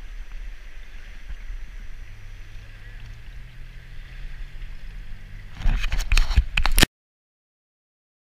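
Shallow river water running and sloshing close to the camera as a walleye is released. Near the end come about a second of loud bumps and splashing, then the sound cuts off suddenly.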